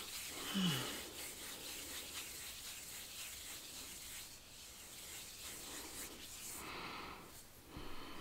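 Soft, faint rubbing of hands, with a short low falling hum about half a second in and a breath near the end.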